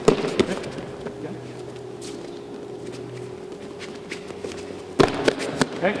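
Sharp slaps and thuds of a point-fighting drill exchange, gloved strikes and bare feet on the mats. They come in a quick flurry at the start and another about five seconds in, with quieter shuffling between.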